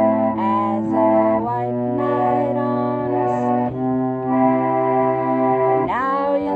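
Pump organ (foot-pumped reed organ) playing sustained chords over a held low bass note, the chords changing every second or two. A woman's singing voice comes in near the end.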